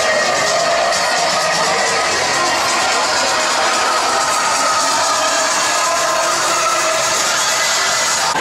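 Loud music playing, with crowd noise mixed in.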